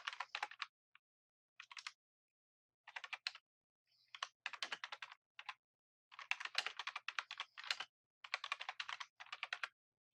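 Computer keyboard typing: quick runs of keystrokes with short pauses between them, about six runs in all.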